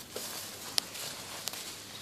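Footsteps and light rustling of a person moving about on the forest floor, with two sharp clicks under a second apart near the middle.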